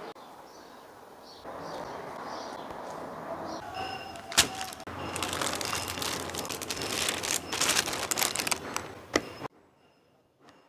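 A steady hiss of water boiling in a stainless pan, then a sharp click a little past four seconds. After that comes the crinkling and rustling of a plastic bread bag being handled as slices are taken out. The crinkling is the loudest part and stops suddenly near the end.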